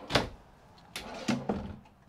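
RV kitchen cabinet drawers being slid open and shut: a sharp knock just after the start, another about a second in, then a few lighter knocks and rattles.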